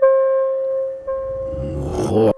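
Live electronic music: a held, clarinet-like reed tone played through electronic effects, sounding afresh about a second in. A low, grainy electronic rumble swells in beneath it in the second half.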